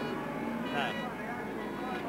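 Steady pit-lane background noise with a faint engine hum, under a man's brief "um".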